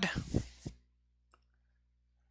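A voice trailing off at the end of a question, with a few soft low thumps, then near silence broken by one faint click.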